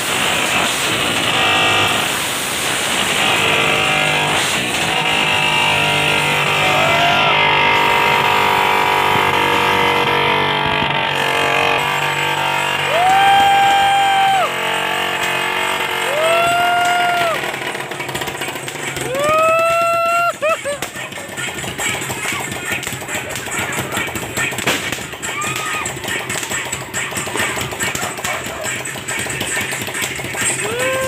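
Fireworks and firecrackers going off: rapid crackling and popping through the second half, with several short whistle-like tones that rise quickly and then hold.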